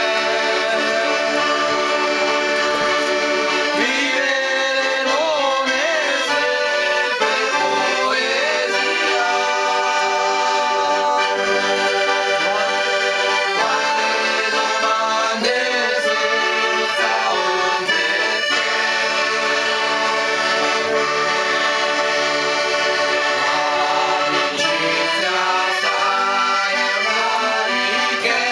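Accordion playing a traditional folk tune, with steady held chords and a melody moving over them, without a break.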